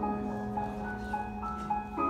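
Slow, gentle instrumental music, with short high keyboard-like notes repeating over one long held low note. It plays through the room's speakers as the soundtrack of a projected presentation video.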